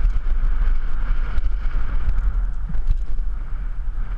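Wind rumbling on the microphone of a helmet camera on a downhill mountain bike at speed, with tyre noise and small rattles from the bike running over a loose dirt trail.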